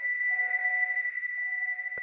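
Ambient electronic background music: one steady high tone held over soft, sustained lower notes.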